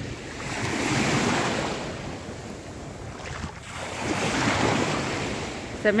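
Gentle sea waves washing in at the shoreline, the surf swelling twice about three and a half seconds apart, with wind buffeting the microphone.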